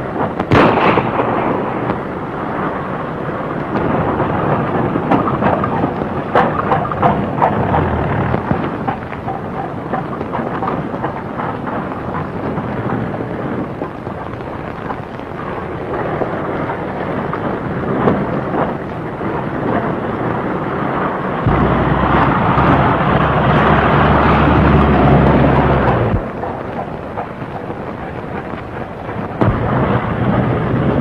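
A single gunshot about half a second in, then the rumbling, crackly hiss of an old optical film soundtrack. From about 21 to 26 seconds a louder, steady, low engine drone comes in and then cuts off suddenly.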